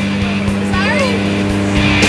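Aircraft engine and propeller drone heard inside the cabin of a skydiving jump plane in flight, a steady low hum.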